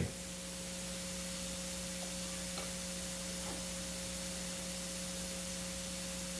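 Steady low hiss with a faint constant electrical hum: the background noise of the microphone and sound system while nothing else is heard.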